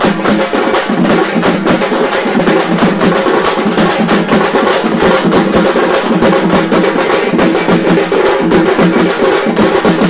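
Loud procession drumming: large drums beaten with sticks in a fast, dense, unbroken rhythm.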